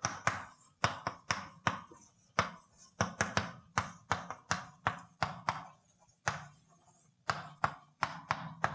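Chalk writing on a blackboard: a quick, uneven run of sharp taps as each letter is struck and stroked out, with a few short pauses between words.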